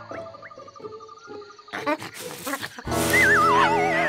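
Cartoon background music, joined about three seconds in by a loud cartoon animal cry whose pitch wavers as it falls.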